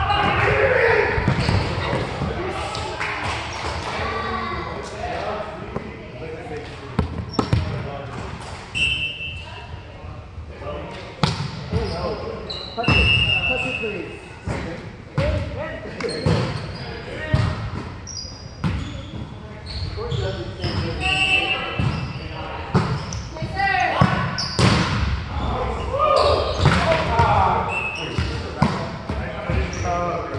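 Indoor volleyball rallies echoing in a gymnasium: repeated sharp smacks of the ball off players' hands and forearms, with players' shouts and calls between the hits.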